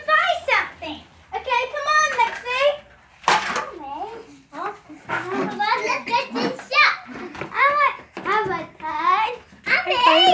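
Children's high voices talking and calling out in short bursts throughout, with a brief noisy burst a little over three seconds in.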